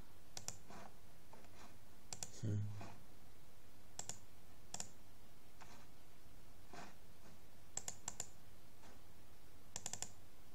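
Computer mouse button clicks, scattered and irregular, several coming as quick double-clicks. A brief low hum sounds about two and a half seconds in.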